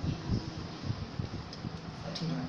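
Steady low background rumble of a small room, with faint murmured voice sounds near the start.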